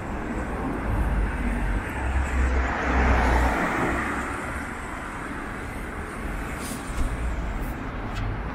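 City street traffic: a passing car's tyre and engine noise swells and fades around three seconds in, over a steady low rumble of road noise.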